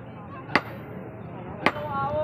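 Blacksmith's sledgehammer striking a hand-held tool on an iron anvil: two sharp metal-on-metal blows about a second apart.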